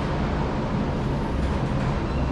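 Steady low rumbling background noise with no distinct event.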